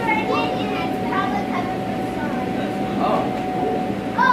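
Children's voices chattering in short bursts over a steady, even drone, the air blower that keeps the inflatable throne and play structures inflated.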